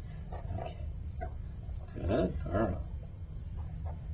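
A toddler's wordless vocal sounds, twice, the second louder, with a few light clicks of wooden toy blocks being handled, over a steady low hum.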